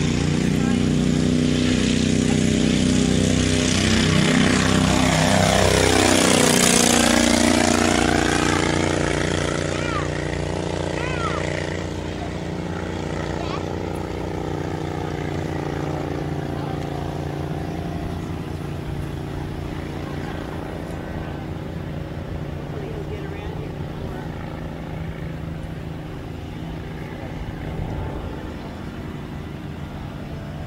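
Legal Eagle ultralight's four-stroke V-twin Generac engine running at takeoff power. The engine note sweeps as the plane passes, is loudest about six seconds in, then fades steadily as the plane climbs away.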